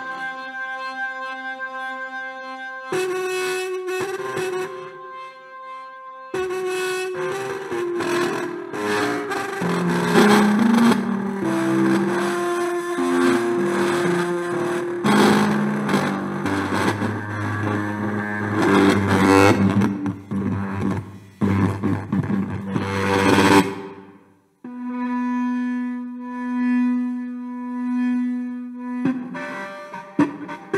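Speaker driver instrument: a cone-less speaker driver, fed by a keyboard through an amplifier, rattles against a small piece of sheet metal, and a piezo pickup on the metal sends that rattle to a speaker. The result is buzzy pitched notes coloured by the metal's trashy resonances. It plays a few held notes, then a busy run of changing notes, breaks off suddenly near the end, and finishes on one long low note that swells and fades.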